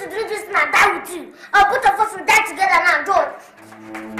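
A child crying out in a series of loud, wordless yells, several falling in pitch. Low, steady music comes in near the end.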